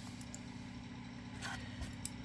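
A small handheld hole punch pressed hard through thick cardboard, giving one faint, brief crunch about a second and a half in, over a steady low hum.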